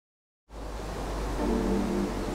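Dead silence for about half a second, then a steady rushing noise with a low rumble fades in, and soft background music with held notes comes in about a second and a half in.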